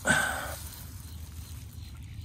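A man's short voiced sound, like a grunt, lasting about half a second at the start, then low steady outdoor background noise.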